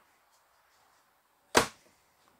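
An overhead cabinet door being pushed shut: one sharp clack about a second and a half in.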